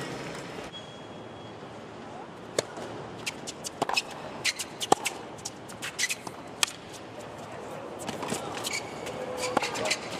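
Tennis ball bouncing and being struck on a hard court: a string of sharp, separate pops over a low crowd murmur, the loudest about five seconds in.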